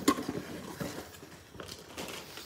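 Quiet handling noise of plastic-wrapped packaging and a cardboard box being moved about inside a tool case: soft rustling with a few small clicks and knocks.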